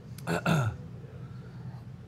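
A man's short throaty vocal sound, falling in pitch and lasting about half a second.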